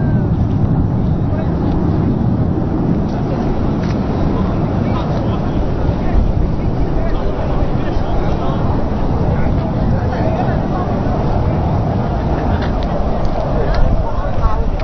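Steady, loud aircraft engine noise from a flying display overhead, with crowd voices mixed in underneath.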